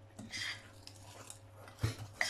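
A metal fork stirring thick batter by hand in a glass bowl: soft scrapes and light clicks of metal against glass, with a dull knock near the end.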